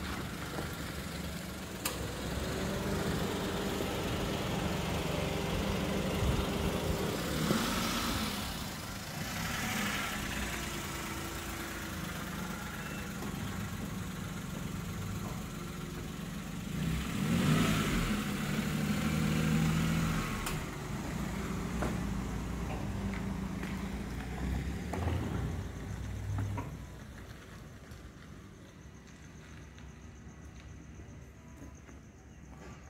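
Small hatchback car engines running at low speed as the cars roll slowly past, with louder swells as a car passes close, about a third of the way in and again past the middle. The sound drops away near the end.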